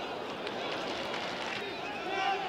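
A man's voice, the match commentary, over steady stadium crowd noise.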